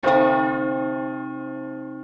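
A single bell strike that rings on, slowly fading.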